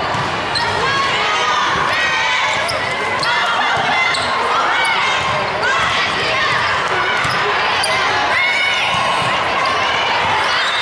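Sneakers squeaking in many short chirps on a hardwood court as players shuffle and move during a volleyball rally, over indistinct voices of players and onlookers echoing in a large hall.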